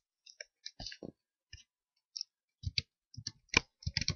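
Computer keyboard keys being typed: irregular single clicks, with a pause of about a second in the middle.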